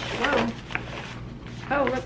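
Two brief vocal sounds, a short rising-and-falling one near the start and another just before the end, over light rustling and clicks of paper and plastic bags as school supplies are handled.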